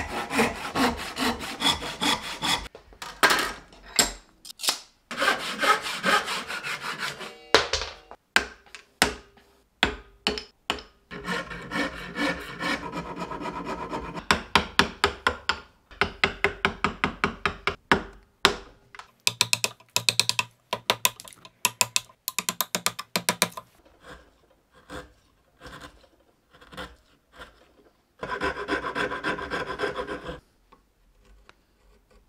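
Hand saw cutting wood in runs of quick back-and-forth strokes, broken by spells of single sharp knocks as a chisel chops out the waste between the saw kerfs. Near the end, a rasp files the wood in short strokes.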